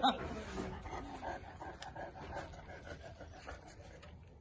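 Central Asian shepherd dog (alabai) panting and giving soft, short whines as it takes food from a hand at a metal gate.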